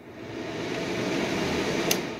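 Small clear-plastic electric fan running, its whirring air noise building as the blades spin up over about a second and a half. A sharp click comes near the end, and the noise then starts to fade.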